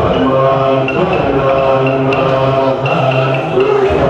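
Group of Buddhist monks chanting Pali verses in unison: low men's voices in long held notes, running without a pause.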